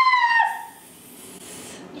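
A girl's high-pitched, drawn-out squeal of excitement, held steady and sliding slightly down in pitch before it stops about half a second in.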